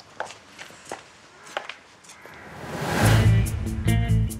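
A few spaced footsteps on pavement, then a rising swell leads about three seconds in into dramatic background music with a heavy low beat.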